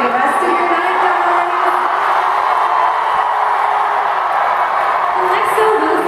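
Large arena crowd of fans screaming and cheering, a dense, steady wall of high-pitched voices.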